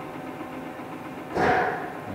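Clausing Metosa C1440S engine lathe running in threading mode, with the lead screw turning and the half nut engaged: a steady gear hum with a few steady tones. A louder, half-second clatter comes in about one and a half seconds in.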